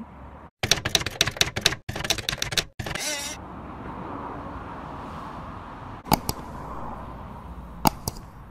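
Edited-in sound effects for a subscribe-button animation: about two seconds of rapid typewriter-like clicking, then two single sharp mouse clicks, one a few seconds later and one near the end, over a steady background hiss.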